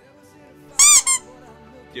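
A loud, high double squeak about a second in, each squeak rising and then falling in pitch, over faint background music.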